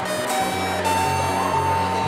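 littleBits Korg synth kit oscillators sounding through its speaker bit: a low synth line steps from note to note every fraction of a second. A steady higher tone comes in about a second in and holds over it.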